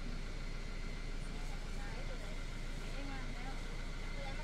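Steady low hum of an engine running at idle, even throughout, under faint voices.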